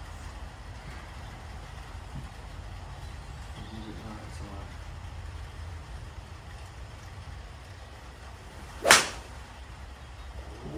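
A single sharp crack of a PXG 0317 X driving iron striking a golf ball, about nine seconds in, over a steady low rumble.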